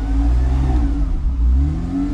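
Porsche Cayman race car's engine heard from inside the cabin, revved in two short blips, the revs rising and falling, as the hand-control throttle grip is twisted.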